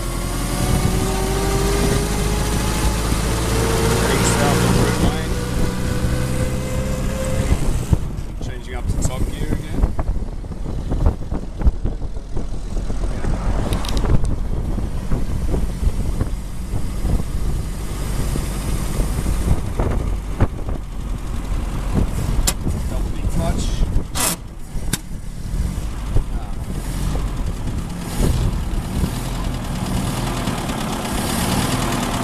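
A 1924 Bullnose Morris Cowley driving in top gear, heard from its open cab: the engine and drivetrain run with a whine that climbs steadily in pitch for about eight seconds as the car gathers speed. After that the sound turns rougher and lower, with scattered rattles and knocks.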